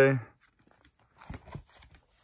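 Plastic nine-pocket card binder page being turned: a soft crinkle and rustle of the plastic sleeves starting a little past halfway, after the end of a spoken word.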